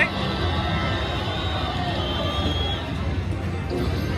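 Wonder 4 Boost Gold slot machine playing its bonus-win music as it tallies the free-games total, over casino floor noise with distant chatter.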